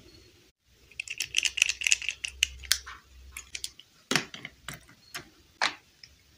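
Small hard plastic toy pieces clicking and tapping as they are handled and set down: a quick run of light clicks, then four louder knocks spaced about half a second apart near the end.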